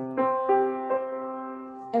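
Piano notes struck a few times in the first second and left ringing, sounding the 3:4 ratio, a perfect fourth.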